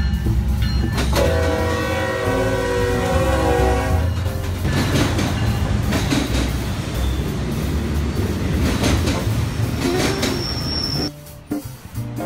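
A diesel freight train's air horn sounds for about three seconds, then freight cars roll past with a loud rumble and wheel clatter over the rail joints. A brief high squeal comes near the end, just before the sound cuts off.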